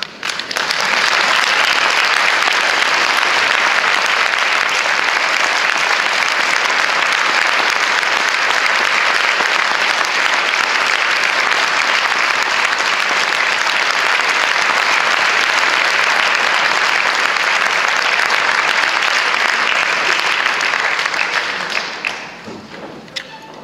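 Audience applauding, starting abruptly and dying away near the end.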